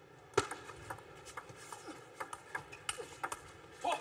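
Table tennis ball clicking off the rackets and the table during a rally: a string of sharp, irregularly spaced ticks, the loudest about half a second in, over a faint steady hum of the hall.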